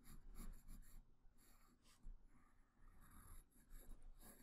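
Faint scratching of a graphite pencil on paper: a run of short, irregular strokes as a curve is sketched by hand.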